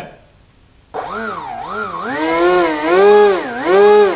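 Small brushless outrunner electric motor spinning a pusher propeller on a bench test, starting about a second in and revved up and down several times, its whine rising and falling in pitch with a steady high whine over it. It is turning the correct direction, with nothing catching.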